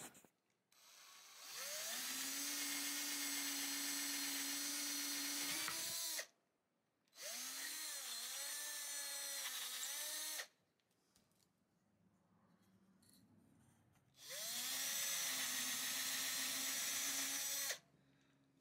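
Cordless drill boring holes in a small drilling pattern block, three separate runs of a few seconds each. Each run begins with a rising whine as the motor spins up, then holds steady; in the middle run the pitch dips and wavers as the bit bites.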